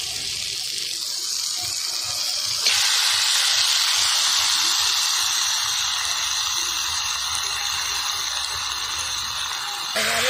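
Raw chicken pieces tipped into hot oil in an iron kadai with frying potatoes: a steady sizzle jumps suddenly louder a little under three seconds in as the meat hits the oil, then slowly dies down.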